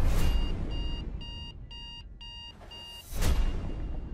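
Trailer sound design: a heavy hit, then a rapid electronic beeping like an alarm clock, about seven high beeps at roughly three a second, then another loud hit about three seconds in.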